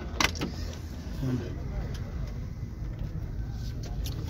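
A car door latch clicks open about a quarter second in, followed by a low steady rumble.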